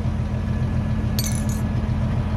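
A teaspoon clinking briefly against a small glass tea glass about a second in, over the steady low drone of an idling tractor engine.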